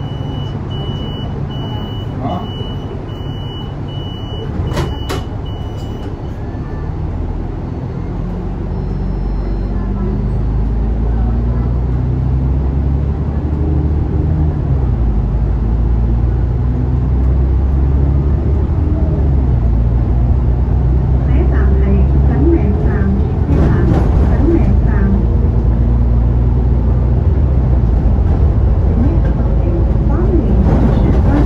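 An Alexander Dennis Enviro500 Euro 5 double-decker bus heard from its lower deck, with the diesel engine pulling the bus up to speed, its note rising and falling through the gear changes and growing louder in the second half. A high steady beep sounds for the first few seconds.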